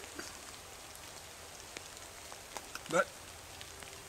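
Light drizzle: a faint steady hiss with scattered small ticks of drops landing close by.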